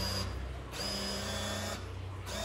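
Hilti SFC 22-A cordless drill's brushed motor running under heavy load as it slowly drives a 15 cm deck screw into wood, a steady hum that dips briefly a couple of times. The drill is struggling, short of torque for the job.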